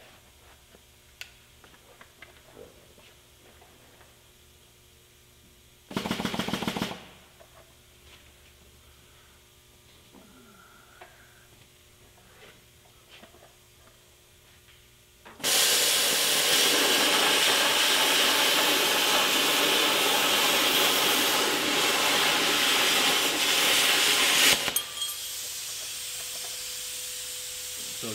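Hypertherm Powermax45 XP plasma torch with fine-cut consumables cutting sheet steel freehand: a loud, steady hiss for about nine seconds that cuts off suddenly, then a quieter hiss of air carrying on. A short burst from the torch comes about six seconds in.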